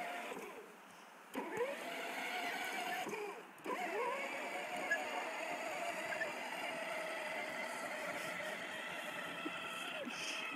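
Electric motor and gearbox of a battery-powered kids' ride-on Raptor quad running with a steady whine. It drops out briefly twice in the first four seconds and then picks up again.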